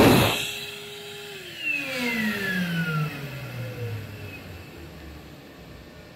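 Excel Xlerator hand dryer cutting off right after the start, its air blast stopping abruptly. The motor then winds down: a whine that holds steady for about a second, then falls in pitch over the next few seconds and fades away.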